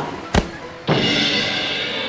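Sound effect of someone walking into a lamppost: one sharp knock about a third of a second in, then a steady ringing tone from about a second in.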